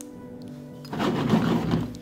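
Rubbing-alcohol vapour in a glass jar puffs and sputters at the small hole in the lid for about a second, starting about a second in, without catching into a steady jet. Steady background music plays underneath.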